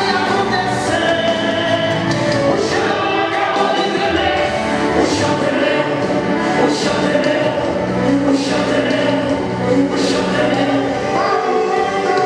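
Gospel song with a choir singing over a steady beat.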